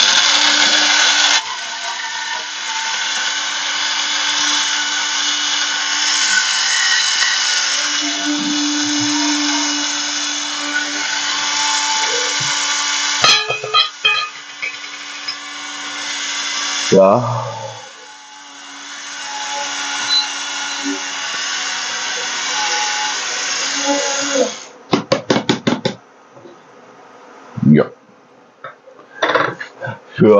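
Electric coffee grinder grinding beans for filter coffee. It runs steadily for about thirteen seconds, pauses briefly, and runs on more quietly until it stops about 25 seconds in. A quick series of clicks follows.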